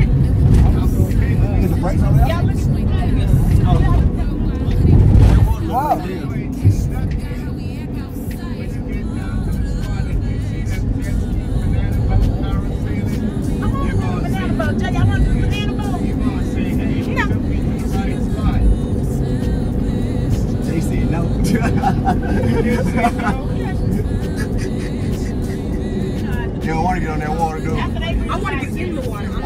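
Engine and road rumble heard from inside a moving taxi van, with music and indistinct voices underneath.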